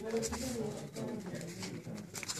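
A low, murmuring voice in a small room, with short crisp clicks and rustles of paper being creased and folded by hand.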